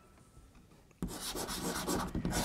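Chalk writing on a chalkboard: short scraping strokes starting about a second in, after a silent first second.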